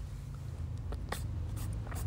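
Low steady room hum with a few short, faint clicks and scratches in the second half.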